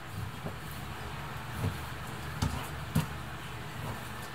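Kitchen knife slicing raw chicken breast on a plastic cutting board, the blade knocking the board about four times at uneven intervals, over a low steady hum.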